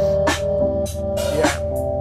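Music with a steady drum beat and heavy bass, played through a car's upgraded stereo of JBL Club coaxial speakers, a JBL amplifier and two 12-inch JBL subwoofers, heard inside the cabin.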